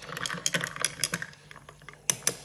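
Long metal spoon stirring ice cubes in a glass, clinking against the ice and glass in a quick run that thins out after about a second.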